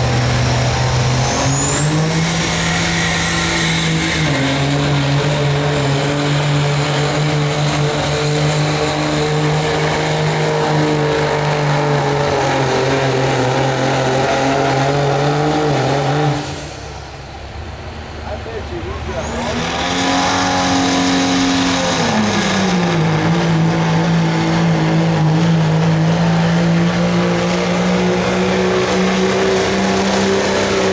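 Diesel pulling engines at full throttle dragging a weight-transfer sled: a loud, steady engine drone with a high whine above it that climbs in pitch about two seconds in. Past the middle the sound drops away briefly, then the engine comes back with a falling note that settles to a steady level.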